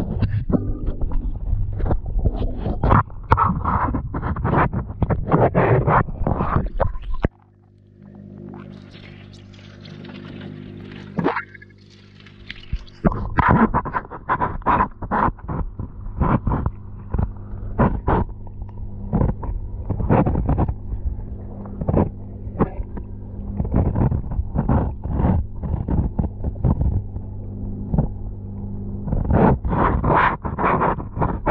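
Aquarium heard underwater from a camera inside the tank: a steady low hum from the mains-driven pump or filter, with frequent irregular clicks and knocks. From about a quarter to nearly halfway through it drops to a quieter hiss, then the hum and clicks come back.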